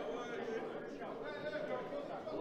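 Indistinct voices of people talking in a large hall, a low murmur of chatter under no foreground sound.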